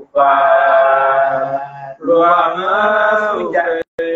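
A man's voice chanting in a drawn-out melodic style, in two long sustained phrases with a short breath between them about two seconds in.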